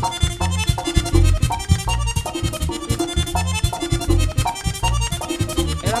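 Merengue típico band playing an instrumental, accordion-led passage, with a bass pulsing on the beat under quick, dense percussion.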